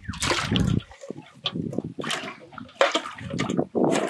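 Water splashing and sloshing in a plastic basin of water as a caught fish is dropped in and the basin is moved. The loudest splash comes in the first second, followed by several short splashes and knocks.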